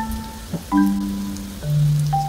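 Oil sizzling and crackling under potato pancakes frying in a nonstick pan, with light background music of simple held notes changing about once a second.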